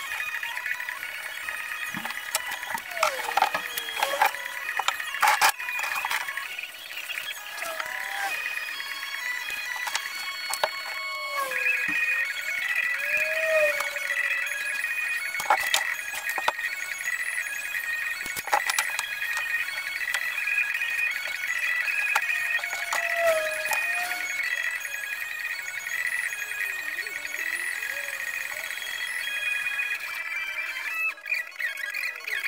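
Music with a high, stepping melody, over scattered clicks and knocks.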